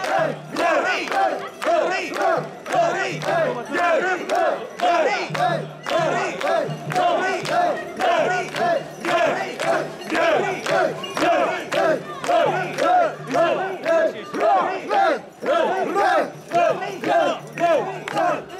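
A large group of mikoshi bearers shouting a rhythmic carrying chant in unison, about two calls a second, as they bounce the portable shrine along.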